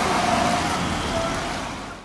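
A passenger car driving past close by on an asphalt road, its tyre and engine noise loudest at first and fading away as it moves off.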